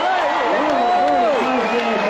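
A man commentating on the competition, with crowd noise behind his voice.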